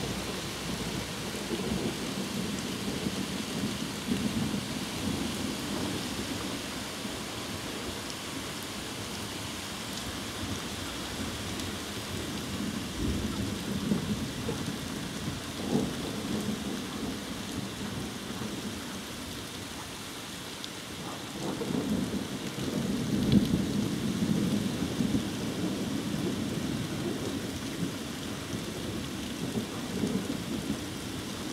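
Steady rain falling, with thunder rumbling through it in several rolls. The longest and loudest rumble builds about two-thirds of the way through.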